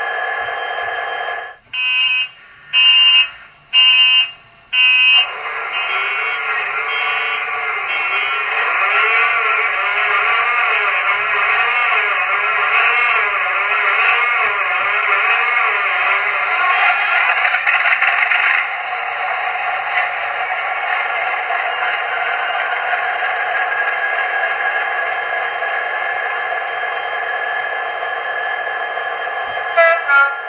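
Model Class 66 locomotive's TTS sound decoder playing its engine-start sequence through a small speaker. After a steady hum come four short loud buzzes about a second apart. Then the recorded EMD two-stroke diesel starts and runs up with a wavering, surging note, which settles to a steady idle about 19 seconds in.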